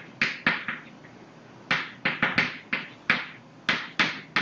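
Chalk writing on a blackboard: about a dozen short, sharp tapping and scratching strokes in an irregular rhythm, with a gap of about a second after the first few.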